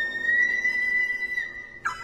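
A dizi (Chinese bamboo transverse flute) holds one long high note, rising slightly in pitch early on. The note fades near the end and is broken by a sharp, tongued attack on a new note.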